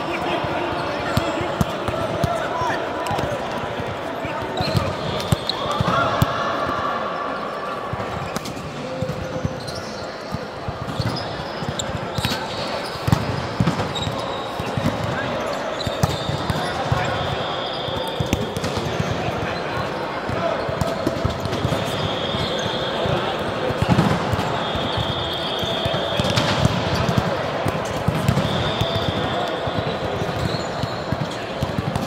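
Indoor volleyball play: sharp ball strikes and thuds on the court, with players' shouting voices. Several high squeals sound in the second half, typical of sneakers on the court floor.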